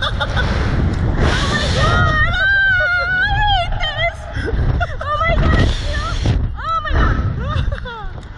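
Two slingshot-ride riders laughing and letting out long screams while the capsule flies and bounces, with wind rushing and buffeting the onboard microphone; one drawn-out scream runs about two seconds in.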